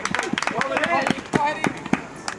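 Spectators' voices calling out, not clear as words, mixed with a string of sharp clicks. The loudest click comes about one and a half seconds in.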